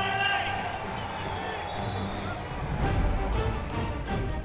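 Background music with a voice over it at the start, building to a deep bass swell about three seconds in.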